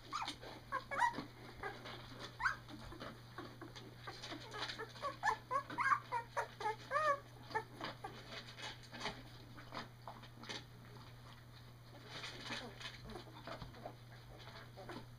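Newborn Llewellin setter puppies, eyes not yet open, squeaking and whimpering in many short high calls. The calls come thickest in the first half and grow sparse later.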